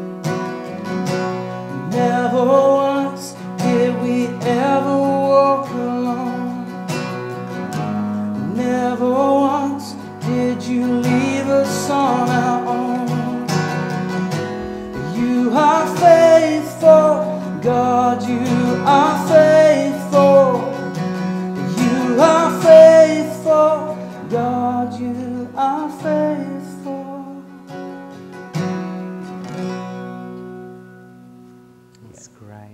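A man singing a worship song to his own strummed acoustic guitar, the melody climbing and loudest in the middle. Near the end the voice drops away and a final guitar chord rings out.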